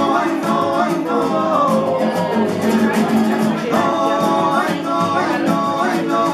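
Several nylon-string acoustic guitars strummed fast in a gypsy rumba rhythm, with men singing together over them and holding long, wavering notes.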